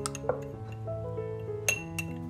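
Metal spoon clinking against the side of a drinking glass while stirring a thick cinnamon and honey mixture: a few sharp clinks, the loudest near the end, over soft background music with held notes.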